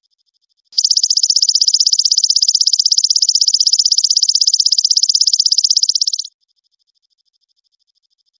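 An insect's loud, fast, even trill starts about a second in and cuts off suddenly some five and a half seconds later. Under it runs a fainter, steady, rapid chirping.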